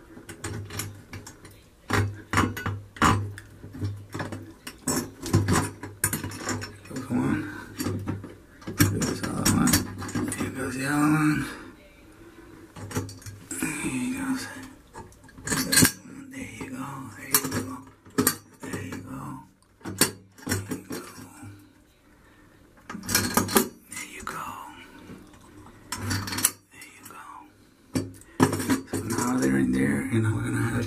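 Chrome grab bar and its mounting flange handled against metal toggle bolts: irregular metallic clicks and clinks, several a second in places, with quieter gaps, as the bolts are pushed through and the flange is fitted over them.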